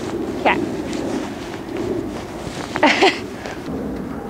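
Horse walking on soft dirt arena footing, its hoofbeats faint under a steady low outdoor rumble. A brief spoken 'okay' comes just after the start, and a short vocal sound near three seconds.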